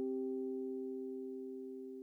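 Two sustained keyboard tones a perfect fifth apart sounding together, fading steadily. This is the ear-training test interval, a harmonic perfect fifth.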